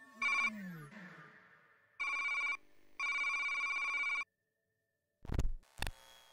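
Electronic computer beeps, a synthesized sound effect: one short beep, then two longer warbling trill tones, the second about a second long, like a scanner readout. Near the end come two loud, sudden bursts of sound.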